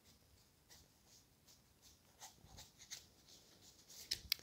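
Near silence, with a few faint soft clicks of Lenormand cards being fanned and handled in the hands.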